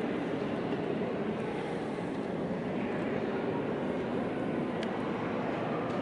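Steady background hubbub of a large church interior, an even murmur with no distinct voices or music, and a faint click near the end.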